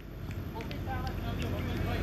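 Open-air ambience at a cricket ground: faint, distant voices of players and spectators over a low rumble that slowly grows louder.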